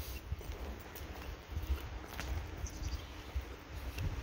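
A pony walking on a grass verge: soft, irregular hoof footfalls over a steady low rumble.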